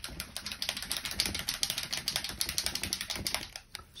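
A small pot of water-soluble rust-effect paint being shaken hard by hand, giving a rapid, even clicking rattle that stops shortly before the end.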